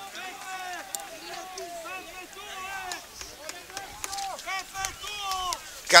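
Several people's raised voices shouting and calling out, overlapping one another, with a few faint knocks.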